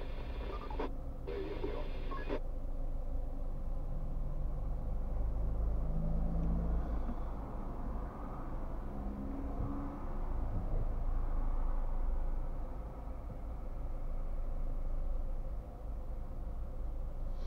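Low, steady rumble inside a car's cabin while it idles in stopped traffic. About two seconds in, a brief stack of steady tones cuts off abruptly.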